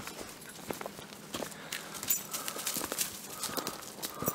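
Irregular footsteps and light crunches on a dry, rocky dirt trail strewn with leaves, from a person walking and two dogs moving about.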